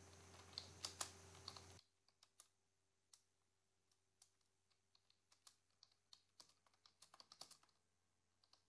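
Faint typing on a computer keyboard: irregular single keystroke clicks, a few louder ones in the first two seconds, then sparser and fainter, with a short run near the end.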